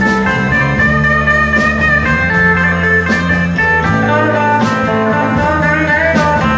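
Live electric band music: a lead electric guitar plays a sustained, wavering melody over electric bass and a drum kit. No singing is heard, so this is an instrumental passage.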